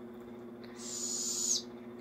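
Barred owl chick giving one raspy, hissing begging call, a little under a second long, ending with a slight drop in pitch while it waits to be fed.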